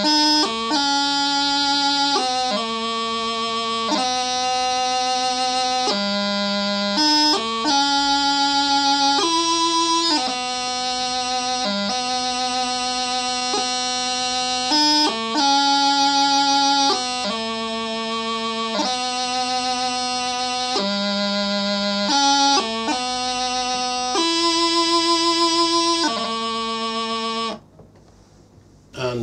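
Practice chanter playing a slow piobaireachd melody: held notes linked by quick grace notes, with no drones, stopping suddenly near the end.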